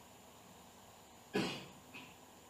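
A single short cough about a second and a half in, with a smaller second catch just before the end, over faint steady room hiss.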